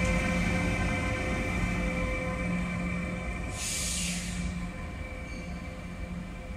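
Renfe electric locomotive running light past at low speed and drawing away: a steady hum with several whining tones, slowly fading as it goes. A brief hiss a little past halfway.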